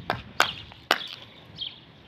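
A bird calling over and over, a short high chirp about every two-thirds of a second. Three sharp knocks in the first second are louder than the chirps.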